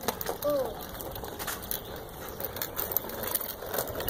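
Small Radio Flyer tricycle rolling over pavement, its wheels and frame giving a steady run of irregular clicks and rattles. A short high voice sounds about half a second in.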